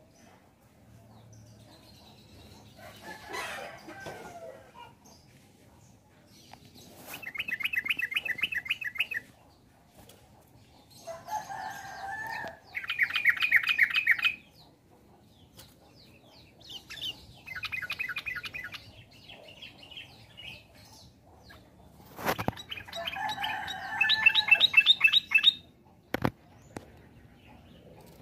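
Caged yellow-vented bulbuls (trucukan) singing in four bursts of rapid, bubbly repeated notes, each about two seconds long and about five seconds apart. A lower two-part phrase comes just before two of the bursts. There is a sharp click shortly before the last burst.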